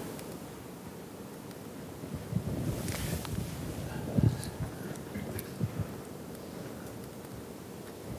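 Soft rustles and a few dull knocks from a lapel microphone as a glass of water is picked up from below the lectern and lifted to drink, over quiet room tone.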